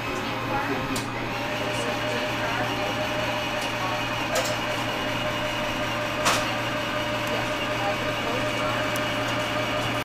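Model railroad diesel locomotive running along the layout track, a steady mechanical hum with a few light clicks.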